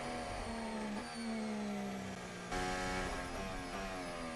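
Formula 1 car's turbocharged V6 engine heard onboard, its pitch falling gradually. The pitch steps up slightly about a second in and again more markedly about two and a half seconds in.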